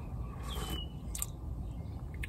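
A man eating a spoonful of thick pea soup he has just cooked: wet mouth sounds of eating, with a short noisy patch about half a second in and a sharp click about a second in.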